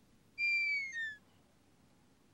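Comic sleep sound effect added in editing: a whistled two-note tone, a longer high note sliding slightly down, then a short lower note. It plays once, starting about half a second in, as a cartoon snore.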